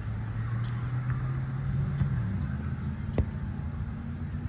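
A single sharp smack about three seconds in, a volleyball being hit, over a steady low motor hum from an unseen engine whose pitch drops slightly a little past halfway, with faint distant voices.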